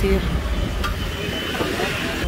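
Busy street-market background: traffic rumbling with a low murmur of distant voices, a single sharp click a little under a second in and a faint thin high tone near the end.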